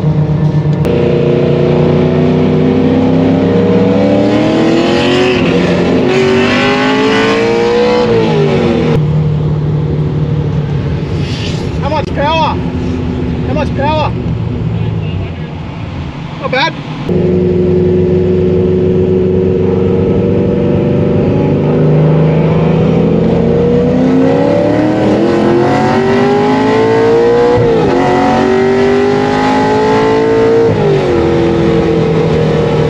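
Ford FG Falcon GT's 5.4-litre DOHC V8, heard from inside the cabin at full throttle: the revs climb through the gears with an upshift, then fall away as it backs off to a steadier run. After an abrupt change the engine holds steady revs, then accelerates hard again and climbs through another upshift near the end.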